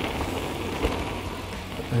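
Mountain bike rolling fast down a packed-dirt trail: a steady rushing noise of tyres on dirt and wind over the camera, with one small knock about a second in.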